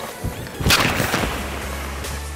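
A hockey slapshot from a 75-flex graphite stick: one sharp crack of the blade striking the ice and puck about two-thirds of a second in, a shot clocked at 92 mph. Electronic background music runs underneath.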